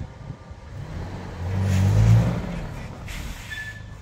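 1996 Toyota Kijang Grand Extra's four-cylinder petrol engine pulling the vehicle forward at low speed. Its note rises to a peak about two seconds in, then eases off.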